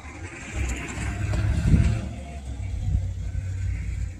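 A car driving by on the street, its engine and tyre noise growing louder through the first couple of seconds and then easing off.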